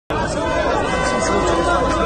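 A crowd of men talking loudly at once in overlapping chatter, cutting in abruptly just after the start.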